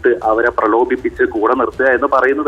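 Speech only: a voice talking continuously over a telephone line, sounding narrow and thin.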